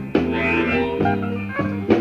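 Live band playing a slow blues vamp, with held chords and electric guitar, under a pause in the talking.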